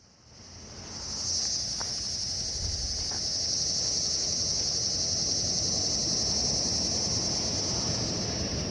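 Crickets chirping in a continuous high-pitched chorus that fades in over the first second and then holds steady, over a low background hiss.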